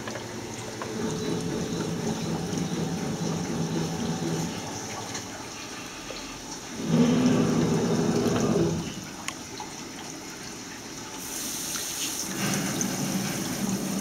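Semiconductor wet bench running: water flowing in its process and rinse tanks over a steady machine hum, with a louder stretch of about two seconds midway.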